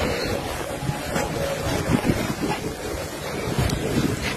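Wind buffeting a handheld phone's microphone: a steady rushing, rumbling noise.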